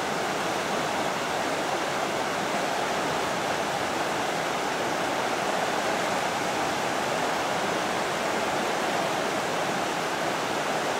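Fast river rapids rushing over rocks, a steady, unbroken rush of water.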